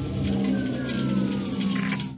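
A steady low hum under several sustained tones that slowly glide down in pitch.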